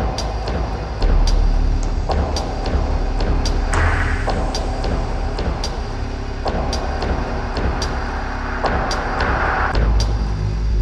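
Dark, droning live electronic music on a large PA. A heavy sub-bass rumble swells louder about a second in, with sharp clicks about twice a second and two brief washes of hiss.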